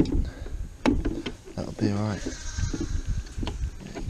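Lambs bleating, with a few sharp plastic knocks and clicks from a multi-teat lamb-feeding bucket as a rubber teat is pushed back into it.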